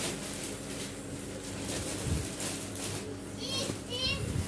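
Thin plastic wrapping on a vacuum-packed foam mattress rustling and crinkling softly as it is handled, with a few low thuds about two seconds in. Children's voices sound in the background, with one short high call shortly before the end.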